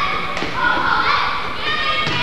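Basketball thudding as it is dribbled on a hardwood gym floor, over voices in the gym.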